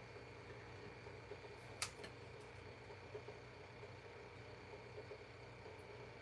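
Near silence: quiet room tone with a faint steady hum, broken by one sharp click a little under two seconds in and a few faint ticks of small handling.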